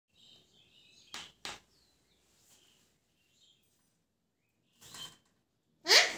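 Alexandrine parakeet giving a few soft, high chirps, with two sharp taps a little after a second in. Near the end comes a loud call that sweeps up in pitch, the loudest sound.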